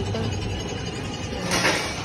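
Small amusement-park ride car running along its rail track: a steady low hum and rumble, with a brief rush of noise about one and a half seconds in.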